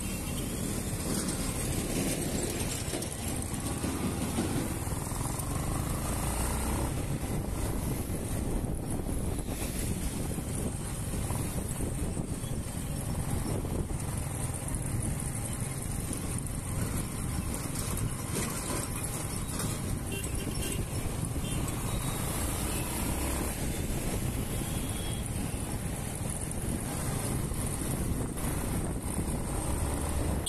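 Yamaha motorcycle running as it is ridden through traffic, heard from the rider's seat as a steady mix of engine and road and wind noise.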